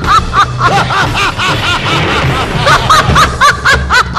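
A man's theatrical villain laugh as the demon Mahishasura: a rapid run of 'ha-ha' syllables, about four a second, breaking off about two seconds in and then starting again. Dramatic background music plays under it.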